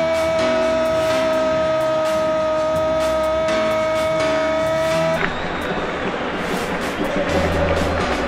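Spanish-language football commentator's goal cry, one long held 'gooool' lasting about five seconds and cutting off suddenly, over background music with a steady beat.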